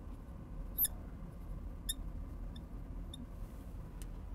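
Felt-tip marker squeaking in a few short, high chirps as it writes on a glass lightboard, with a quiet steady hum underneath.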